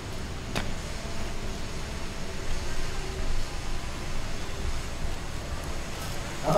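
Steady low outdoor background rumble with one sharp click about half a second in.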